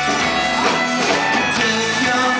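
Celtic rock band playing live, an instrumental passage with electric guitar, drum kit and fiddle.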